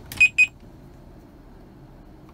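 Two short, high electronic beeps in quick succession from a touchscreen car head unit responding to touches. After them there is only a quiet, steady low hum.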